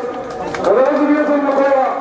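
A person's voice calling out in long, drawn-out shouts, each syllable held: a short call, then a longer one rising in pitch about half a second in, typical of slogans or greetings called out to a passing demonstration march.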